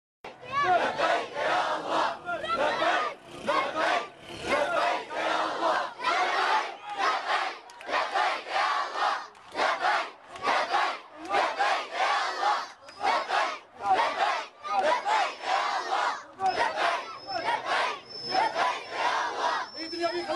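A large crowd of men and boys chanting slogans in unison. The shouted phrases come in a regular loud rhythm about once a second.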